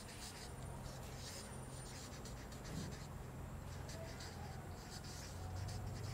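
Felt-tip marker writing on flip-chart paper: a run of short, faint strokes as words are lettered by hand. A low steady hum runs underneath.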